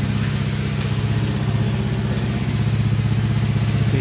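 2018 Honda Beat scooter's 110cc single-cylinder engine idling steadily, with an even, rapid firing pulse.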